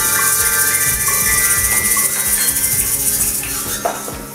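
A group of children playing small glockenspiels with mallets while egg shakers rattle, making a jumble of ringing metal-bar notes over a steady shaking hiss. It thins out near the end.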